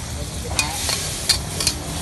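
Metal ladle scraping and clanking against a wok about four times as food is stir-fried, over a steady sizzle from the hot wok.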